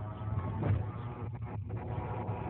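Power convertible top of a 1964 Pontiac Catalina folding down, with a steady low hum and one brief louder knock a little before the middle.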